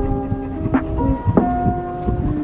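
Background music with bell-like keyboard notes, over the low rumble of wind buffeting the microphone in an open-top vehicle on the move.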